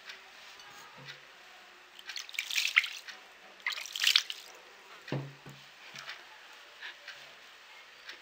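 Water sprinkled by hand onto steamed couscous grains in a clay dish and rubbed in: two short splashy rustles, about two and a half and four seconds in.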